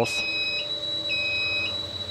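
Electronic warning beeper sounding twice, each high beep about half a second long, over a steady high-pitched whine, as the RV's electrics come on with the key turned.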